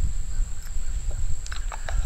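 A few small clicks and taps near the end as the parts of an EZ Stitch lock stitch awl are handled and put back into its wooden handle. Under them runs a steady low rumble and a thin steady high tone.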